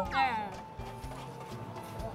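A short falling whistle-like sound effect in the first half second, then soft background music with long held notes.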